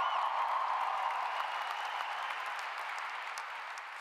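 Large audience applauding, the clapping slowly fading over the few seconds.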